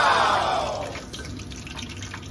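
Hot oil sizzling and crackling steadily as battered pieces deep-fry in a steel kadai. A falling pitched tone sounds over it during the first second.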